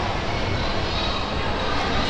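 Steady indoor mall ambience: an even rushing hum of ventilation and distant crowd noise, with no distinct events.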